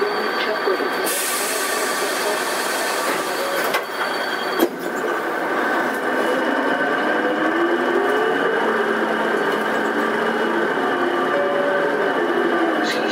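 Karosa B931E city bus under way, heard from on board: steady engine and drivetrain running with a whine that rises and then falls in pitch midway through, and a sharp knock about four and a half seconds in.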